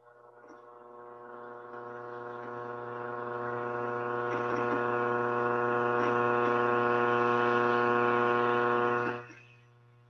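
A steady electrical buzzing hum at one unchanging pitch that grows louder over about six seconds, holds, then cuts off suddenly near the end.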